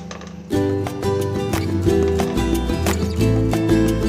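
Background music with a steady beat. It drops quiet for about half a second at the start, then comes back in at full level.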